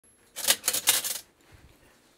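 A short clattering rattle of about half a dozen quick clicks, lasting under a second, from something being handled at a kitchen counter.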